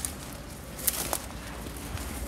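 Footsteps through grass and weeds, with two brief rustles about a second in over a low steady rumble.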